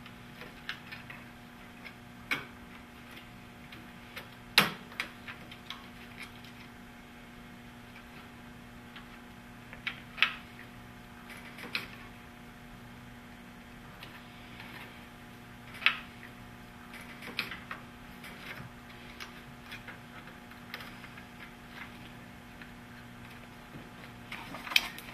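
Scattered light clicks and taps of a circuit board being handled as an expansion card's connectors are pressed down onto the main board's pin headers, over a steady low hum. The sharpest click comes about four and a half seconds in.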